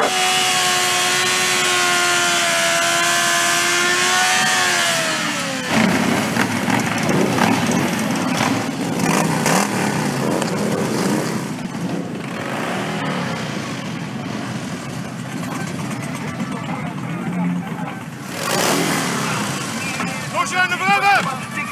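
A sport-bike engine held at high revs during a rear-wheel burnout, steady in pitch for about five seconds and then falling away as the throttle closes. After that comes the lower, rougher running of several motorcycle engines as the bikes move off.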